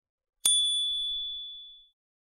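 A single bright ding sound effect, struck once about half a second in and ringing out with a clear tone that fades over about a second and a half. It is the notification-bell chime that marks the bell being switched on in a subscribe animation.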